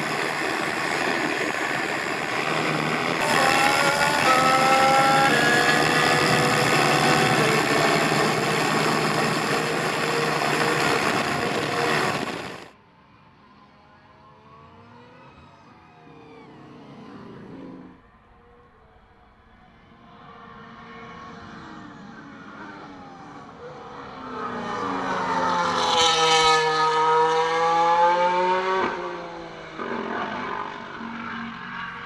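Mercedes W14 Formula 1 car's 1.6-litre turbocharged V6 hybrid power unit running at speed on track, its note stepping through gear changes. The sound cuts off abruptly about a third of the way in and is quieter for a few seconds. The car then passes close by near the end, its engine note rising and falling as it goes past.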